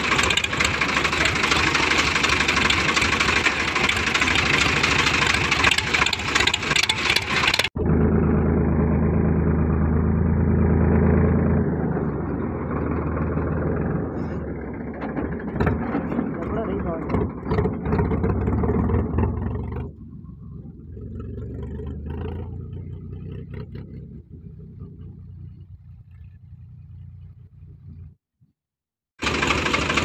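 Sonalika tractor engine running with its silencer removed, open exhaust, while the tractor is driven. The sound changes abruptly about eight seconds in, turns quieter after about twenty seconds, and drops out briefly near the end.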